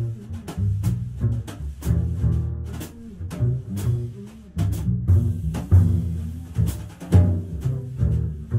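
Upright double bass played pizzicato, a run of plucked jazz notes well to the fore, with light drum-kit strokes ticking behind it.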